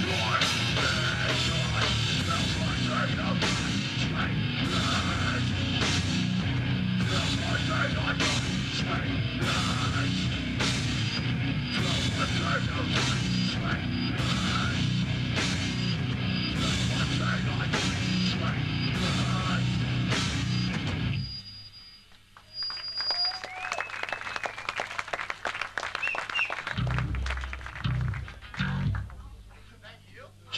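Hardcore band playing live: heavily distorted guitars, bass and drums with shouted vocals, in a heavy passage accented about once a second. The song stops abruptly about two-thirds of the way through, leaving quieter stage noise with a thin high whine and a few low thumps.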